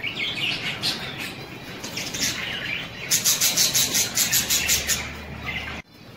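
Caged budgerigars chirping and chattering, then a fast, even run of about six high notes a second for about two seconds. The sound cuts out briefly near the end.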